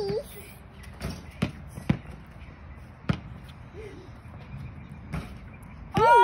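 A basketball bouncing on a packed-dirt yard: about five separate thuds at uneven intervals.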